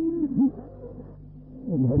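A man's voice on an old, muffled tape recording of a religious speech: a short drawn-out phrase, a pause of about a second in which a low steady hum is heard, then the voice resumes near the end.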